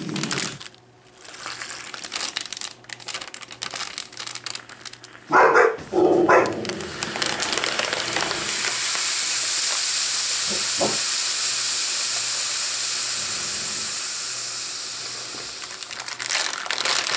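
Plastic heater bag crinkling as it is handled, then a steady hiss that builds from about seven seconds in and slowly tapers near the end: a flameless ration heater pouch reacting with water and venting steam inside the sealed bag. Two short, loud pitched sounds come about five and six seconds in.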